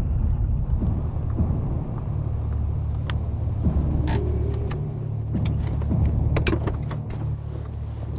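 Peugeot car driving: a steady low rumble of engine and road noise, with a few light clicks and knocks in the second half.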